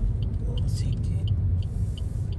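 Steady low road and engine rumble of a car heard from inside its cabin while driving, with faint light ticks about two or three times a second.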